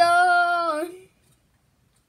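A young girl singing unaccompanied, holding one long note that fades out about a second in.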